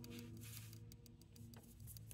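Near silence: faint room hum with a few soft light ticks of tarot cards being slid across a tabletop.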